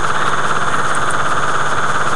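A steady, unchanging buzzing drone at an even level, with no pauses or changes.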